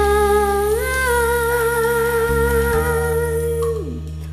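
A woman singing one long held note over a karaoke backing track. The note steps up slightly about a second in and falls away near the end.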